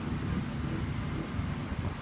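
Steady low background rumble with a faint hiss above it and no distinct events.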